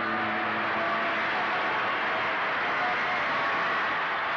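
Steady cassette tape hiss in the gap between two songs, with a few faint lingering tones.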